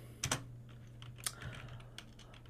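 Light, sparse typing on a computer keyboard: a few separate key clicks, the loudest cluster near the start and another about a second later.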